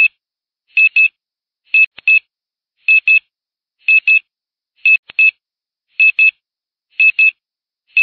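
Electronic beeper sounding a repeating pattern of short high double beeps, one pair about every second, like an alarm clock's beep.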